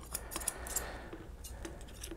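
A few faint, scattered clicks and light metallic ticks from steel grooming scissors being handled near a dog's paw.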